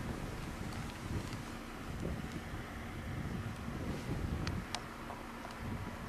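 Wind rumbling on the microphone over a steady low hum, with a few faint clicks.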